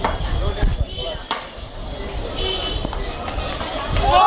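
Street crowd noise: voices of players and onlookers talking and calling, under a low rumble on the microphone, with two sharp knocks in the first second and a half.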